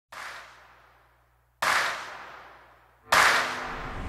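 Three sharp, echoing cracks, each louder than the one before, about a second and a half apart. Each dies away over about a second, and the last runs into a steadier sound.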